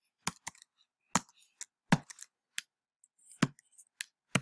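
Typing on a computer keyboard: about ten sharp keystrokes at an irregular pace, with short pauses between them.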